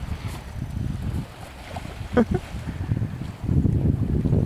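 Wind buffeting the microphone: a low, uneven rumble that grows louder near the end. About two seconds in there is one brief voice-like sound.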